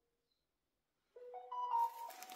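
An electronic chime: about a second in, a short rising run of four pitched tones, with a rustling noise starting under its last notes.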